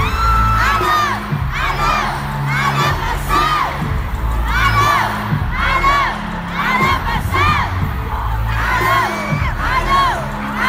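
Arena crowd of concert fans screaming and cheering, many shrill voices rising and falling close to the phone. Deep bass notes of the backing music change every second or so beneath the screams.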